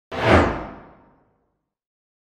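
A single whoosh sound effect for an animated logo intro: it starts sharply, is loudest almost at once, and fades away within about a second.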